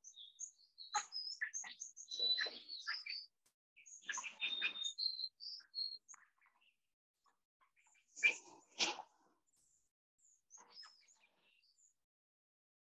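Small birds chirping and twittering in short, high calls, thickest in the first half and sparse later. Two brief, louder sounds come about eight and nine seconds in.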